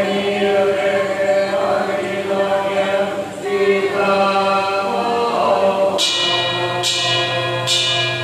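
A group of worshippers chanting Buddhist prayers in unison, in long drawn-out tones. Near the end, three sharp strikes of a percussion instrument ring out, less than a second apart, over the chanting.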